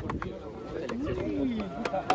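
A football team's voices milling and chattering just after a shouted team chant, with a few sharp clicks and a drawn-out falling low sound about one and a half seconds in.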